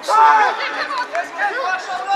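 Several voices shouting and calling out at once at a football ground, with one loud shout just at the start.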